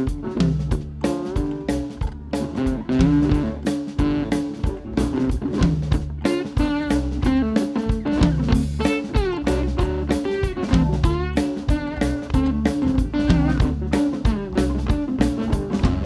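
Live blues band playing an instrumental passage: electric guitar lead over a drum kit keeping a steady beat.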